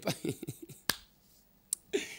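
A man's voice trailing off at the start, then a single sharp click about a second in and a fainter click near the end.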